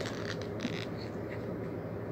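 Faint rustling of a paper photo being rolled by hand around a cinnamon stick, a few soft scratches in the first second over steady low room noise.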